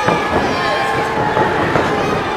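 Live wrestling crowd shouting, with several sharp smacks and thuds from the brawl in and around the ring.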